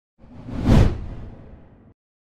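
Whoosh sound effect with a deep low boom under it, swelling to a peak under a second in and then fading out before it cuts off abruptly. It plays under the news channel's animated logo sting.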